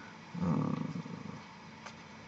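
A man's drawn-out hesitation "euh", low-pitched and lasting about a second, followed by a faint click near the end.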